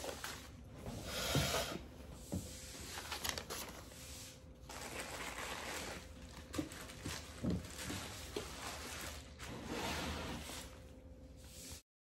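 Sheets of taped paper printouts rustling as they are handled and shifted, in several bouts of a second or more, with a few light knocks.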